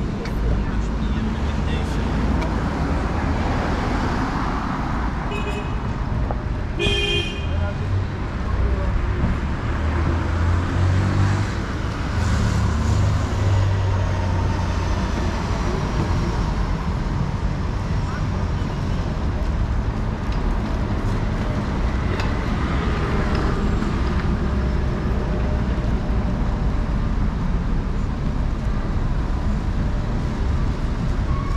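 City road traffic passing close by: a steady rumble of car and bus engines and tyres, louder in the middle stretch as heavier vehicles go by. A short car horn toot sounds about seven seconds in.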